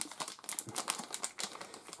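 A foil LEGO minifigure blind bag crinkling as it is handled and opened, with a run of many light, quick clicks.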